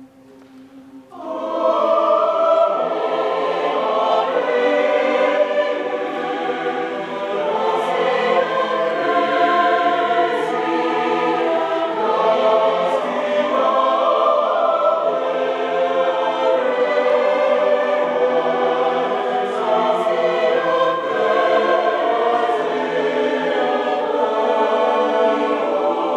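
A mixed-voice university choir singing unaccompanied, coming in together about a second in and then singing in full, many-part chords that shift and move.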